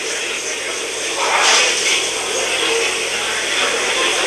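Steady hiss of a mission-control audio feed between voice callouts, swelling briefly about a second and a half in.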